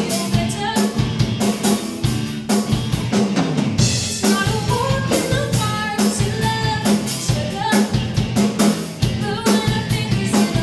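A rock band playing live: drum kit keeping a steady beat under electric guitars and bass, with a lead vocalist singing.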